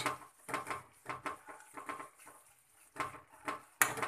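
Metal spoon scraping and knocking against a coated pan while stirring a thick tomato-onion masala, in irregular strokes; it eases off in the middle and picks up again near the end.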